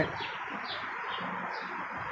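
A few faint bird chirps over a steady background noise.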